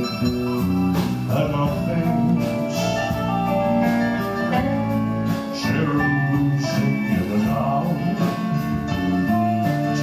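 Live band playing electric guitars, bass guitar and drums, with a male singer at the microphone.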